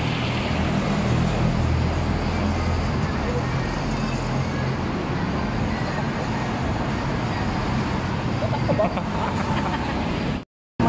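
Steady road traffic noise, with a low hum that is strongest in the first three seconds.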